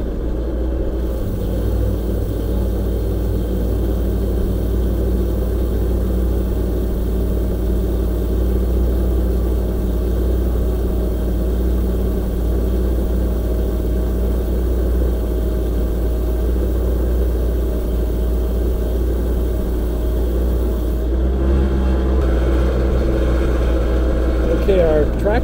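Genie S-40 boom lift's engine running steadily under hydraulic load as the boom is raised, with a steady whine over the engine drone. About 21 seconds in the whine ends and the sound changes as the lifting stops.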